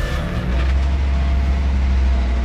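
Vehicle engine and road rumble heard from inside a moving car: a loud, steady low drone.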